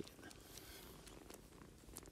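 A domestic cat purring faintly, a low steady rumble.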